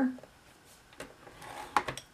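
Light handling of cardstock on a paper trimmer as the sheet is moved to the next score line, with a soft scrape and a couple of sharp clicks, one about a second in and more near the end.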